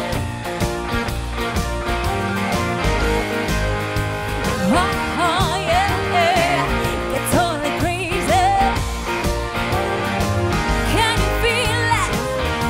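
A band plays a country-pop song: electric guitar and a Nord Stage 3 keyboard over a backing track with drums and a steady beat. A woman sings wavering ad-lib runs from about four seconds in and again near the end.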